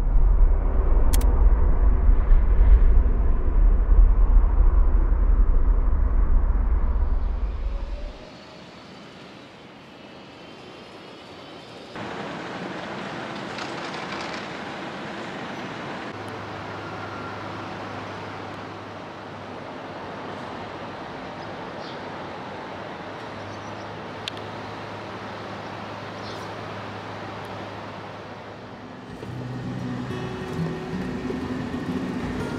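Diesel lorries idling in a car park: a loud, steady low engine rumble for the first eight seconds, then a quieter steady background with a low engine hum.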